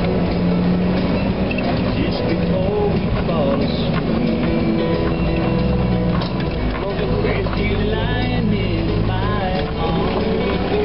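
Jeep engines running at low revs, mixed with people's voices and music.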